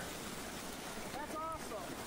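Water gushing out of a culvert outlet under pressure just after a leaf clog has been cleared, a steady rushing noise. A brief faint voice-like call is heard about a second and a half in.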